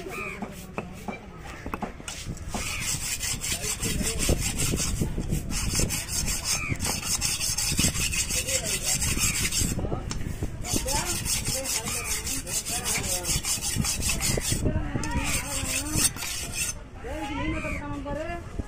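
Large steel fish-cutting knife being sharpened on a flat whetstone: quick back-and-forth scraping strokes with a high gritty hiss, starting a couple of seconds in and going in runs broken by brief pauses.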